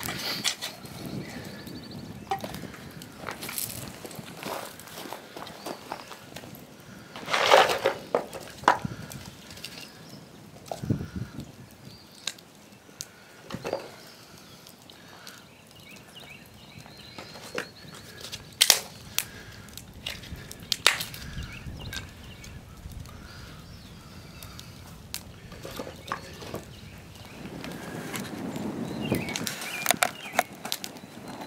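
Pieces of split firewood knocking and clattering as they are set down by hand and stacked around a small fire, with shuffling and footsteps on gravelly dirt. A handful of sharper knocks stand out, the loudest about seven seconds in.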